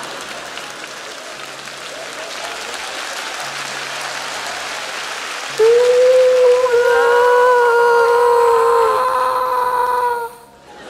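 Audience applause for the first half. About halfway through, several men's voices come in loudly on one long drawn-out shout held at a steady pitch for about four seconds.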